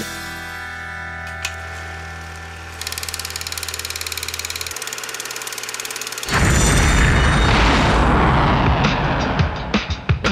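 Title-sequence sound design: a held synthesizer drone with a low hum, joined about three seconds in by a fast, even electronic pulsing, then, about six seconds in, a sudden loud rocket-launch rumble that lasts to the end.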